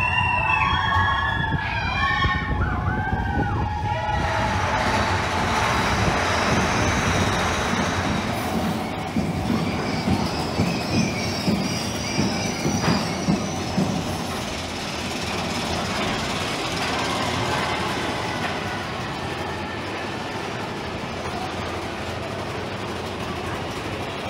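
Big Thunder Mountain Railroad mine-train roller coaster running on its track: steady rumble and rattle of the cars and wheels, with a run of rhythmic clacks partway through.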